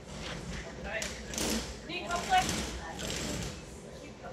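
Indistinct speech from the women handling the dogs, in short broken phrases.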